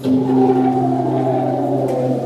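Recorded gospel song played for a mime routine: a long, steady held chord with a low note underneath.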